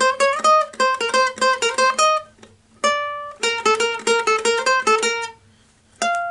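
Mitchell ukulele picked one note at a time in a quick melody line. Two fast runs of plucked notes are split by a single held note about three seconds in, with a brief pause just before the end.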